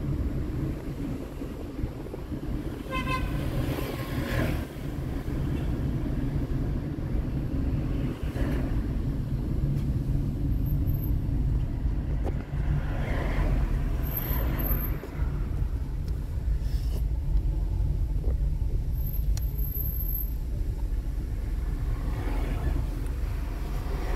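Steady low engine and road rumble inside a Toyota car driving in city traffic, with a short car-horn toot about three seconds in.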